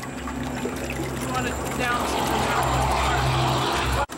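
Sewage sludge pouring from a five-gallon pail into the inlet hopper of a running Vincent KP-6 screw press, over the steady hum of the press. The pouring swells louder in the last two seconds and cuts off suddenly.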